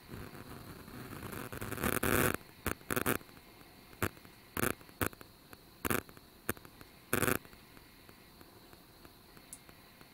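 Rustling and scraping close to the microphone. It builds over about two seconds, then breaks into a string of about ten short scrapes, the last of them about three quarters of the way through.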